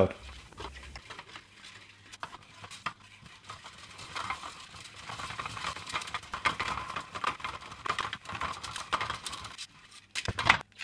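Handling noise of a cardboard-flanged filament spool against a plastic spool holder: scattered light clicks, taps and scraping, sparse at first and busier from about four seconds in.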